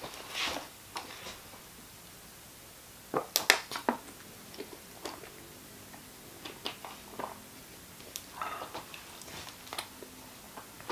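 A person taking a drink: short wet mouth and swallowing noises with small clicks, scattered through and loudest in a quick run about three seconds in.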